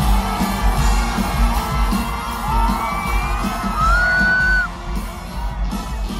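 Live band playing loudly through a big arena sound system, with heavy bass, while the crowd yells and whoops; a few rising whoops stand out in the second half.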